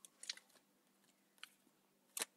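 Near silence, broken by a few faint clicks of tarot cards being handled: two close together about a quarter second in and one more about a second and a half in.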